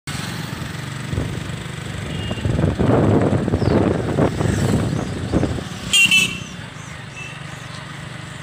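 Road travel heard from a moving motorcycle: steady engine hum with wind rushing on the microphone, loudest in the middle. A vehicle horn beeps once, briefly, about six seconds in.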